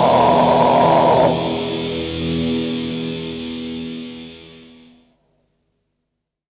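Raw black metal band music ending: the dense distorted playing cuts off about a second in, leaving a held chord ringing and fading out over about four seconds, then silence.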